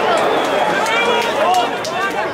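Many voices shouting at once at a football match: a stadium crowd's chants and calls, with a few sharp clicks among them.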